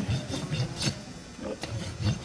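A hoof rasp's smooth side drawn lightly across the edge of a horse's hoof wall in a few short scraping strokes, smoothing off the ragged edge.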